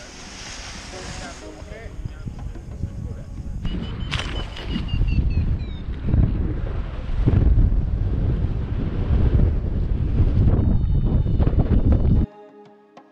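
Wind rushing and buffeting over a paraglider pilot's camera microphone in flight, low and gusty, growing louder from about four seconds in. A faint falling whistle is heard about four seconds in.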